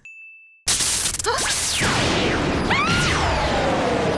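A short single-tone ding chime, then about two-thirds of a second in a loud rush of anime battle sound effects, with whooshing sweeps falling in pitch and a long, slowly falling tone.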